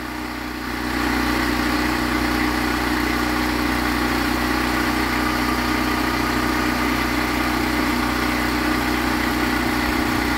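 Drum chicken plucker running with a portable generator beside it: a steady machine drone that gets louder about a second in and then holds.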